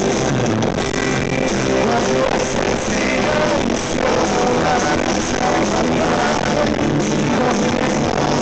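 Rock band playing live, with electric guitars and a lead voice singing, loud and continuous.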